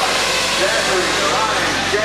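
Several small nitro engines of 1/8-scale RC truggies racing, their whines rising and falling and overlapping as the cars throttle up and brake around the track, over a steady hiss of track noise.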